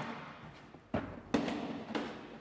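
Hands handling the clear plastic cover and latches of a wall-mounted electrical distribution box, giving three short plastic knocks: one about a second in, one shortly after, and one near the end.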